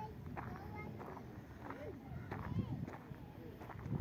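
Faint voices talking in the background, with light footsteps on gravel.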